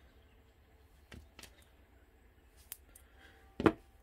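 Quiet handling of cured resin coasters in silicone molds: a few light taps and clicks, then one sharp knock near the end as a coaster in its mold is set down on the table.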